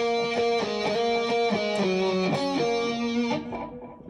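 Electric guitar picking a single-note melody line, one note after another, with the last note fading out about three and a half seconds in.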